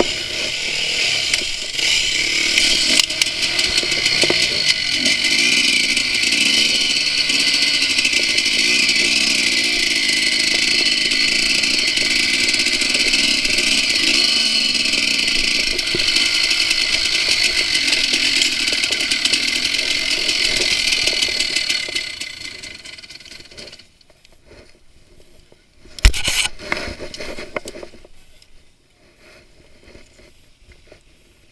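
Enduro dirt bike engine running under throttle, heard loud and close from a camera mounted on the bike, its pitch rising and falling as the rider works the trail. The engine sound dies away a little over twenty seconds in, and a single sharp knock follows a few seconds later.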